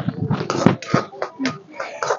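Metal ladle scraping and knocking against a metal kadhai in quick, uneven strokes as chopped tomatoes are stirred, with voices talking in the background.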